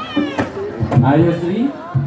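People's voices, with a short, high-pitched rising cry about a third of a second in, followed by lower calls and talk.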